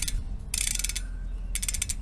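Bicycle rear hub freehub ratcheting as the freehub body is turned by hand: the pawls give two short runs of rapid clicks, a second or so apart.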